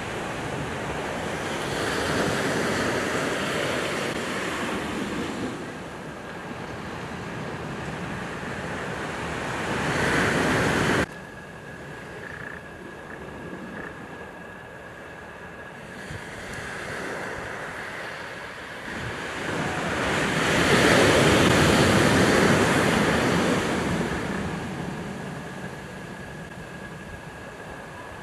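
Ocean surf washing on a beach, a steady rush that swells and fades in slow surges of several seconds. About eleven seconds in it cuts off abruptly and quieter, then builds to its loudest surge a little after the middle.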